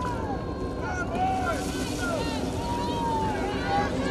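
Several voices shouting and calling out in short, overlapping, rising-and-falling cries, over a steady rush of wind on the microphone.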